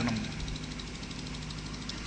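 A steady low hum of background noise with no change through the pause. The tail of a man's voice trails off at the very start.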